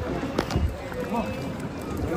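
Indistinct voices of people talking in the background over a steady low rumble, with a single sharp click about half a second in.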